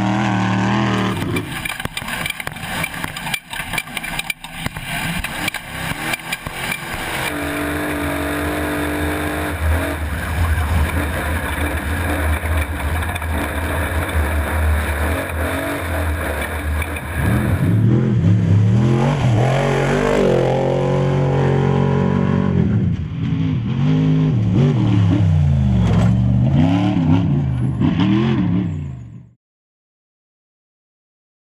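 Off-road race vehicle engines running hard, with rough gravel and wind noise in the first seconds. In the second half the revs rise and fall over and over as an engine is worked through the course. The sound fades out just before the end.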